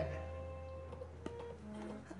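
Faint room tone in a pause between speech: a low steady hum and a few faint held tones, with a couple of soft ticks a little past a second in.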